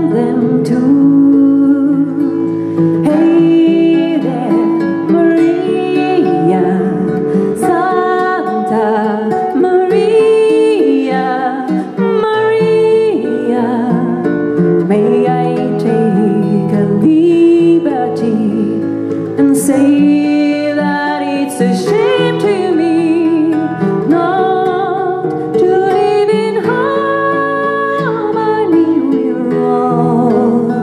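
Music: a woman singing a slow melody to acoustic guitar and plucked upright double bass.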